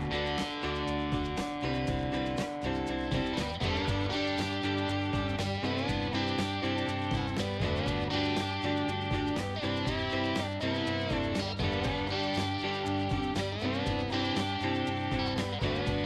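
Background music: strummed guitar with a steady beat.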